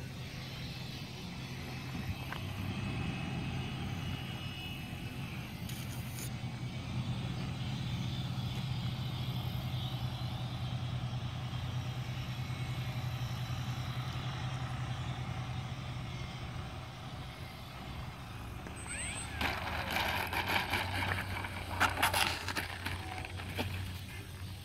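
A steady low rumble while a small electric radio-controlled warbird model flies its approach overhead. Near the end come a few seconds of rustling and several sharp knocks, the loudest about two seconds before the end.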